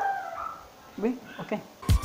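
A dog whining: one high, drawn-out whine falling slightly in pitch, then a brief spoken 'okay', with a music beat starting at the very end.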